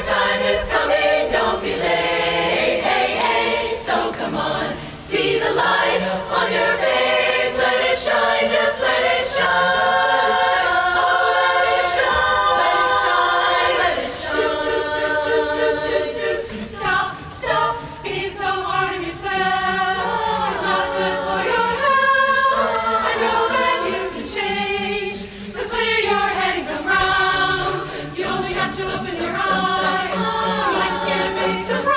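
A large women's barbershop chorus singing a cappella in close harmony, with no instruments.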